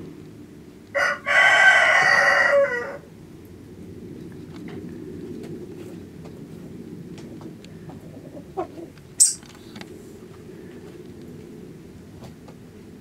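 A rooster crowing once: a short first note about a second in, then a long crow lasting nearly two seconds, over a steady low rumble. A brief sharp high-pitched click comes near the end.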